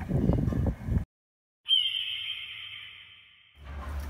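Rumbling noise on the microphone of a camera riding inside a swinging bucket, cut off abruptly about a second in. After a short silence, a single high, clear ringing tone with a quick slight downward slide at its start fades away over about two seconds. Faint low outdoor noise follows near the end.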